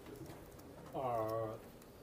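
A drawn-out spoken 'uh', held steady for about half a second starting about a second in, over faint room tone.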